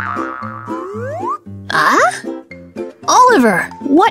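Bouncy children's background music with short stepped notes. About a second in come two rising, cartoon-style glide sound effects.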